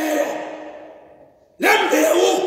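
A man preaching: a phrase trails off into a breathy fade lasting about a second and a half, a brief pause, then he resumes loudly.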